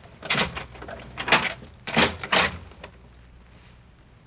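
Radio-drama sound effect of a key working a door lock and the door being opened: a handful of sharp clicks and rattles over the first three seconds.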